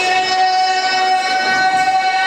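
A single voice holding one long, high, steady sung note, amplified through a microphone and loudspeaker, as part of the chanted singing that accompanies the Gavri dance.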